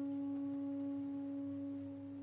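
A single soft held note from a chamber orchestra, close to a pure tone with faint overtones, steady and then fading near the end.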